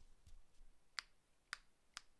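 Near silence broken by a few faint, sharp clicks: one weak one near the start, then three about half a second apart in the second half.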